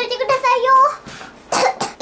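A young girl's drawn-out voiced sound, then two quick coughs about one and a half seconds in.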